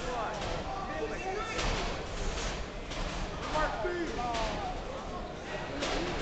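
Indistinct chatter and calls from many people in a large hall, echoing, with a few sharp knocks or claps scattered through it.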